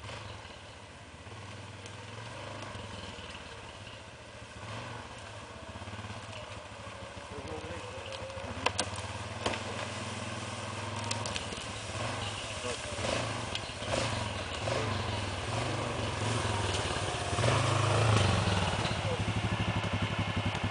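ATV (quad bike) engine running as the quad comes down the trail, growing steadily louder as it approaches, with a couple of sharp knocks about nine seconds in.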